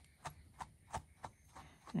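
Small slicker brush raking through a Jersey Wooly rabbit's long wool in quick short strokes, a faint scratch about four times a second, brushing out the remains of a mat that has just been pulled apart by hand.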